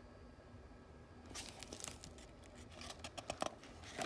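A page of a hardcover picture book being turned by hand: faint paper rustling and crinkling with small ticks, starting about a second in and dying away just before the end.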